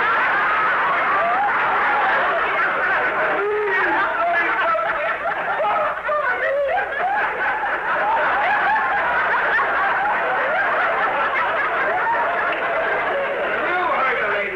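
Studio audience laughing loudly and at length, many voices together.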